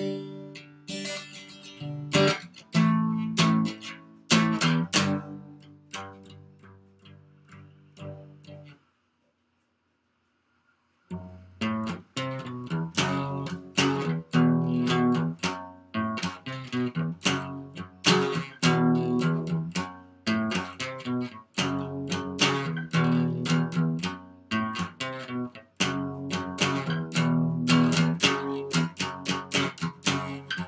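Acoustic guitar played solo, a run of plucked and strummed chords. The playing dies away, breaks off for about two seconds of complete silence a third of the way in, then starts up again and runs on.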